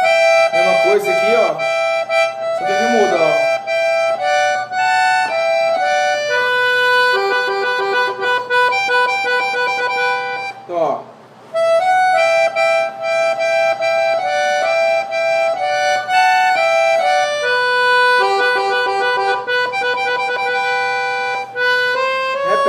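Piano accordion playing a solo melody on its right-hand keyboard, single held notes moving step by step in slow phrases. The playing breaks off for about a second a little before the middle, then the phrase is played again.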